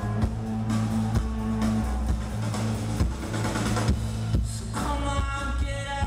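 Live rock band playing: electric guitar, bass guitar and drum kit, with a heavy bass line and regular drum strikes throughout.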